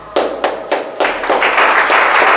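Audience applause: a few separate claps, then many hands clapping together from about a second in.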